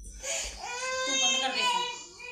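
A toddler lets out one long, high-pitched cry lasting about a second and a half.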